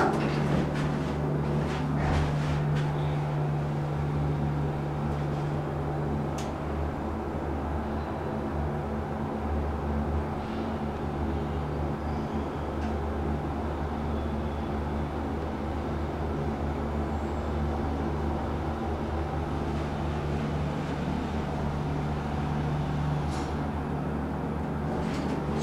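A Northern traction elevator, since modernized by ThyssenKrupp, hums steadily with a low drone as the glass car rides up. The upper part of the drone fades about six and a half seconds in, and a few light clicks come near the start.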